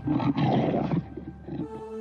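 A wild animal sound effect, loudest in about the first second and then fading, with a held music note coming in near the end.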